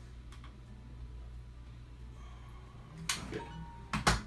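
Quiet room tone with a steady low hum, then a sharp click about three seconds in and another at the very end.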